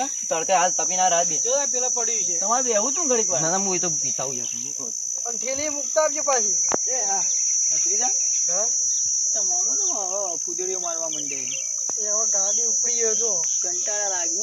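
Insects chirring in a steady high-pitched drone that does not let up, under men's voices talking.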